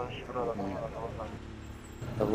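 Street background in a pause between words: a low steady rumble of traffic, with faint voices in the first second.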